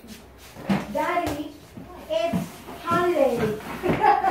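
A young child's voice, high-pitched vocalising or calling out in short bursts in a small room.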